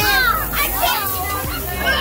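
Children playing: excited, high-pitched children's voices calling out in wordless shouts and exclamations.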